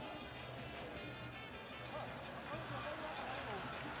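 Faint stadium ambience at a football match: distant voices and faint music from the stands, with a low steady hum underneath.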